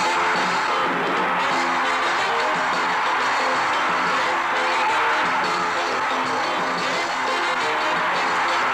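Newsreel background music, steady in level, with sustained held notes throughout.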